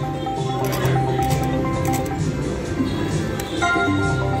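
Slot machine electronic tones and jingles, held beeping notes over a steady low drone, with the background noise of a casino floor and a few faint clicks.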